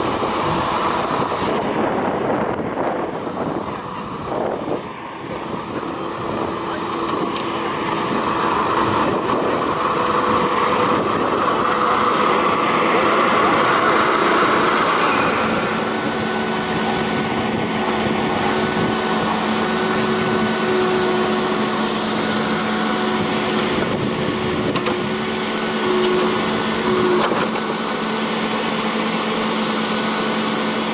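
Toro Groundmaster 4100D mower's Kubota four-cylinder engine running steadily, its note changing about halfway through.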